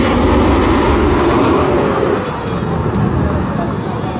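Loud, steady rushing roar of a warplane overhead, with people's voices mixed in; the roar eases slightly toward the end.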